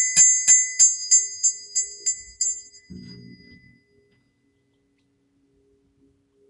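Brass hand bell rung repeatedly, about three strikes a second, with a bright, high ringing. The strikes stop about two and a half seconds in and the ringing dies away a second or so later.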